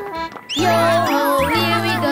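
Children's cartoon background music with a bass line that starts and stops in short repeated notes. The music thins out briefly near the start and comes back fully about half a second in, with quick sliding notes over it.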